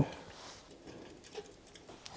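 Faint handling sounds of a small screw and washer being pushed by hand through a metal focuser bracket, over quiet room tone.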